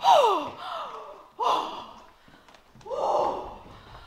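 A person's voice making four short non-speech sounds with pauses between, the first two sliding steeply down in pitch.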